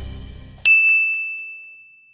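Channel logo ident sound: the tail of a musical sting fades out, then a single bright ding strikes about two-thirds of a second in and rings out, slowly fading.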